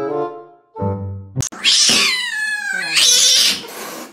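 Music with steady held notes, cut off by a click about a second and a half in. Then a cat yowls loudly twice: long, high-pitched cries that slide down in pitch.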